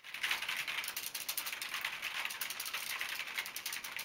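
Fast, continuous clatter of typing, many clicks a second, tapering off near the end.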